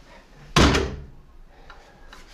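Apartment front door pushed shut, latching with a single loud bang about half a second in.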